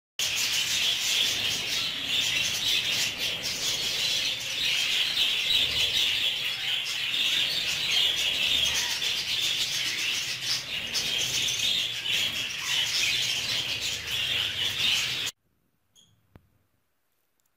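A group of budgerigars chattering and chirping without pause, a dense high twittering. It starts just after the beginning and cuts off abruptly near the end.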